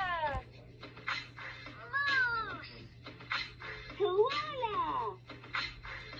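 Fisher-Price Linkimals electronic toys playing recorded sounds through their small speakers: sliding, squeaky calls that rise and fall in pitch, about two seconds apart, with short hissy beats between them.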